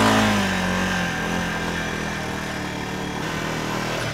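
A motor vehicle engine running close by. Its pitch eases down during the first second, then holds steady.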